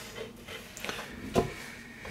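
Plastic building bricks being handled and pressed together on a model: a few light clicks and knocks, the loudest about one and a half seconds in.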